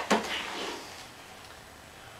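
A short, sharp knock right at the start, then faint rustling that dies away within about a second as a cloth bag is handled.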